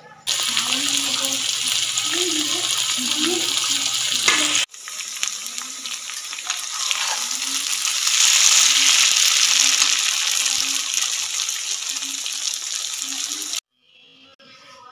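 Maggi noodles and chopped vegetables sizzling in hot oil in a kadai while being stirred, heard as two clips cut together. The sizzle stops abruptly a little under five seconds in, starts again at once, and is loudest around eight to nine seconds in.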